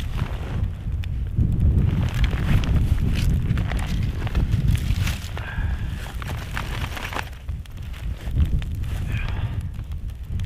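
Cold wind buffeting the microphone in a steady low rumble, with scattered crackles and rustles from a small birch-twig fire being lit and tended.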